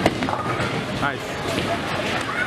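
Busy bowling alley: a sharp crash as a bowling ball strikes the pins right at the start, with a smaller knock about a second later, over constant crowd chatter.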